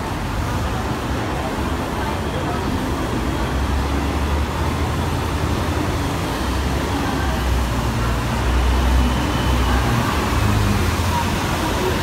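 Street traffic noise, with a double-decker bus coming down the road and passing close below. Its low engine rumble builds from about three and a half seconds in and eases off near the end.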